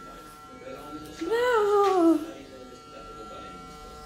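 Electric hair clippers buzzing steadily during a child's haircut. About a second in, a high-pitched voice rises and then slides down for about a second.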